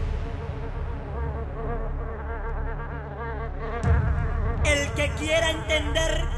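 Electronic dance track in a breakdown: the kick drum has dropped out, leaving a buzzing, wavering synth pad. A single thump comes about four seconds in, and a higher melodic line enters near the end.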